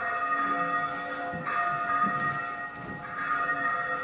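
Ringing bell tones held over one another, with fresh strikes about every second and a half.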